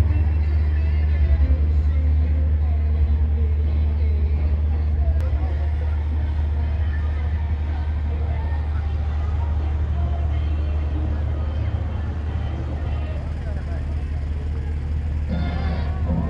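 A steady low engine drone that slowly eases off, under crowd chatter and faint music; voices come up clearly near the end.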